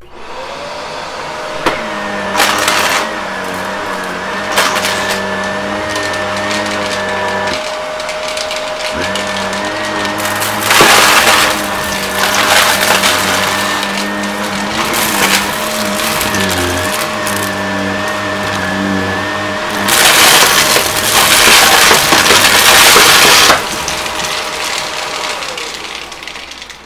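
Upright vacuum cleaner switched on and running with a steady motor whine, sucking up a pile of lint, shredded paper, foam blocks and pennies. Loud bursts of rattling and crackling come as debris goes up, briefly about ten seconds in and for several seconds near the end. The motor winds down and stops just before the end.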